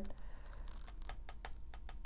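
Tarot cards being handled, giving a quick run of faint, irregular clicks and taps of card stock.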